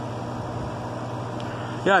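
Air conditioner running: a steady low hum with an even rush of air.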